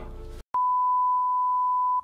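A steady electronic beep: one pure tone, loud and unchanging, that starts suddenly about half a second in after a brief silence.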